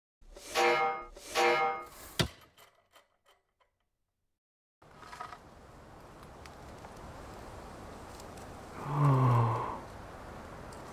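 Short logo jingle: two ringing musical notes and a sharp click, dying away within a few seconds. After a pause comes faint outdoor background hiss, with a brief low buzz that drops in pitch near the end.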